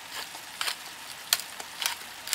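Diced squash frying in oil in a stainless steel pan: a steady sizzle broken by four sharp crackles, about one every half second.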